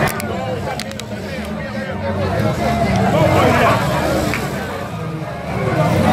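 Hubbub of a large crowd on the move: many overlapping voices talking and calling out over a steady low rumble.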